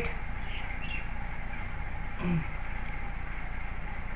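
Steady low electrical hum and hiss of the recording setup, with a brief hummed "mm" from a man about two seconds in.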